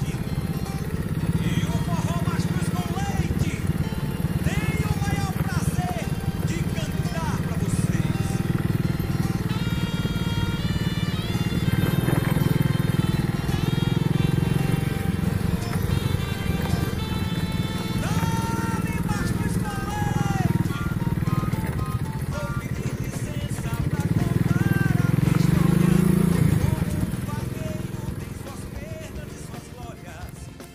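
Motorcycle engine running steadily while riding, with a song with singing playing over it. The engine sound fades off in the last few seconds.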